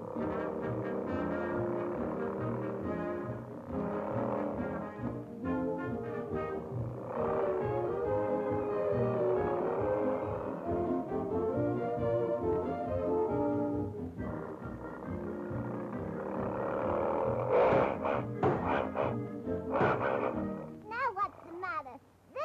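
Orchestral cartoon score led by brass, with a steady beat, swelling louder with sharp accented hits near the end.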